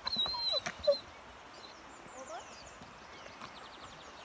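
A dog's brief excited high-pitched whine with a short call or shout in the first second, then faint birds chirping in the background.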